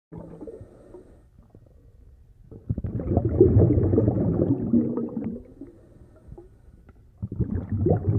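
Underwater ambience sound effect: low rumbling and gurgling of water. It is fainter at first, swells louder about three seconds in, dips, and rises again near the end.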